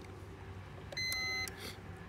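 3M Dynatel 7550 locator transmitter giving one short, high electronic beep about a second in, lasting about half a second, just after a faint button click. This is the unit acknowledging a press of its frequency button as it steps to the next locate frequency (1 kHz).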